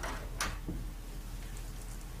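Studio room tone: a steady low mains hum under faint hiss, with a few brief soft clicks in the first second.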